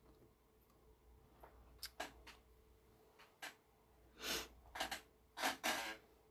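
Faint handling of a sheet of drawing paper on a desk: scattered light taps and several short brushing rustles, more of them in the second half, over a faint steady hum.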